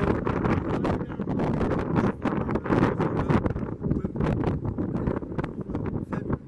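Wind buffeting the camera's microphone: a loud low rushing broken by many crackles.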